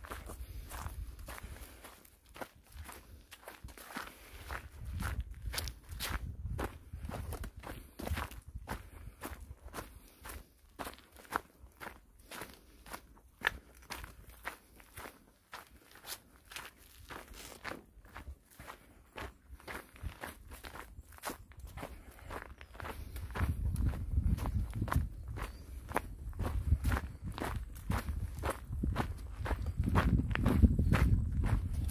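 Footsteps of a person walking at a steady pace on a dirt and gravel forest trail, each step a short crunch. A low rumble builds up in the last several seconds and becomes the loudest sound.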